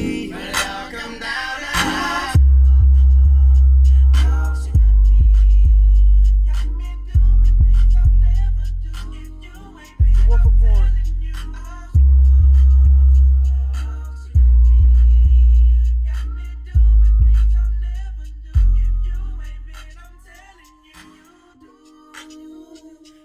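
Hip hop music played loud through a CT Sounds Meso 12 subwoofer in a car trunk, with vocals over it. About two seconds in, long, very deep bass notes begin, roughly one every two and a half seconds, each fading away; they die out near the end.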